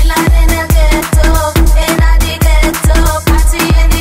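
Tribal house dance music at 136 beats per minute: a steady four-on-the-floor kick drum, a little over two beats a second, under a repeating melodic riff. The full beat comes back in at the very start after a short break.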